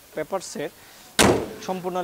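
Hood of a 2005 Toyota Corolla X slammed shut: one sharp bang a little over a second in, dying away within a fraction of a second.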